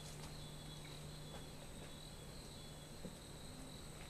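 Faint, steady high-pitched drone of forest insects, with a low steady hum underneath.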